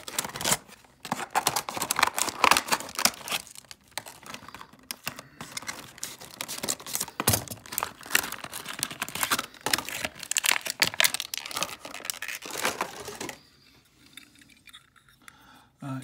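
A clear plastic blister pack of a 1:64 die-cast model car being cracked open by hand: dense crackling, crinkling and snapping of stiff plastic that stops about thirteen seconds in.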